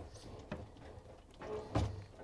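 A GE built-in dishwasher being pulled part-way out of its cabinet opening by its open door: a few light knocks and rattles, then a louder thump near the end.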